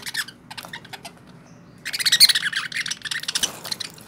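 Budgerigars chirping: a few short chirps, then a loud burst of fast, dense chatter lasting about two seconds from a little before the halfway mark.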